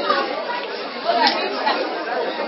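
Several voices talking at once, indistinct, in a reverberant hall. It is a steady background hum of chatter with no single clear speaker.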